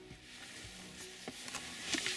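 Faint music from a car stereo, with a few light clicks.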